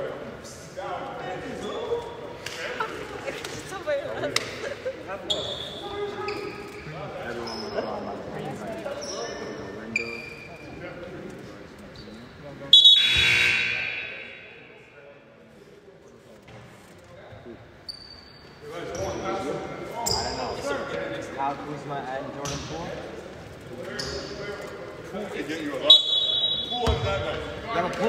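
Basketball gym sounds: a ball bouncing on the hardwood floor, short sneaker squeaks and voices echoing in the hall. About halfway through, one loud shrill blast rings out and dies away in the gym.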